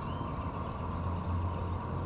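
Steady low outdoor rumble with a constant hum, and one faint high chirp near the start.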